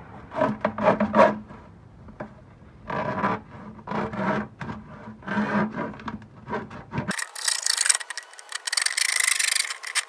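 Hacksaw blade cutting through a plastic bucket's wall in repeated back-and-forth strokes. About seven seconds in the sound abruptly turns into a thinner, faster, continuous rasp.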